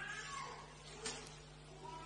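Two faint drawn-out animal cries over a low steady hum, the first about half a second in and the second near the end.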